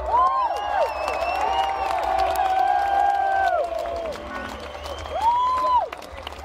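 Large crowd cheering and clapping, with many overlapping long whoops that rise and fall in pitch over the applause, and one loud whoop near the end.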